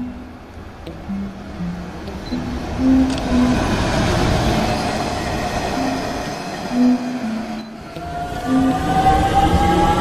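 Slow background music over train noise: a passing electric train's rushing rail noise swells through the middle. After a brief break about three quarters of the way in, an electric train's motors whine, several tones rising together in pitch as it accelerates away.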